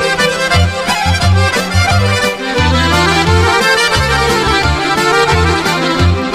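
Instrumental break in a Serbian folk-pop song: accordion carrying the melody over bass notes and a steady drum beat, with no singing.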